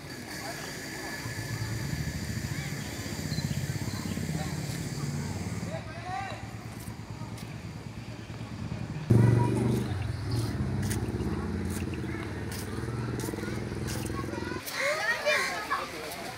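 Street ambience dominated by a vehicle engine running steadily, much louder from about nine seconds in until it cuts off shortly before the end, with people's voices in the background and a few sharp clicks.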